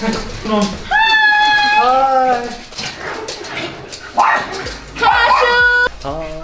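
A dog whining and yelping excitedly in a few long, high-pitched calls, mixed with people's voices.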